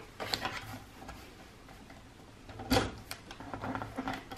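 Paper trimmer in use: a few light clicks as the paper is lined up under the rail, then, near the end, a sharper click followed by short scraping knocks as the sliding cutter is run along to slice the paper.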